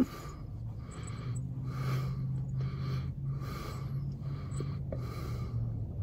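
Chewing of chewy tapioca boba pearls, soft mouth sounds repeating about twice a second, with nasal breathing. A low steady hum runs underneath and stops just before the end.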